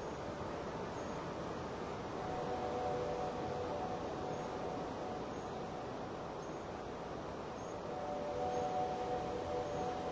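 Roland System-1 synthesizer playing an ambient drone: soft held chords over a steady hiss, one chord coming in about two seconds in and another about eight seconds in.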